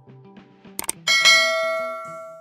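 Subscribe-button sound effects: a quick double mouse click about three-quarters of a second in, then a bright notification bell chime that rings out and fades, over soft background music.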